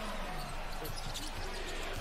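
Game broadcast sound at low level: a basketball bouncing on the court under faint commentator speech.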